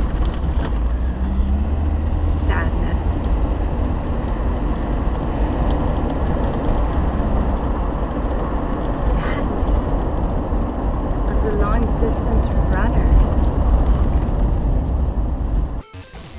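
Car running, heard from inside the cabin: a steady low engine and road rumble, which cuts off suddenly just before the end.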